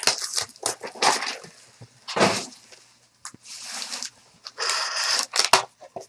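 Packaging on trading-card boxes being torn open and handled: a run of sharp crackles and crinkles, with two longer stretches of rustling tearing near the middle and the end.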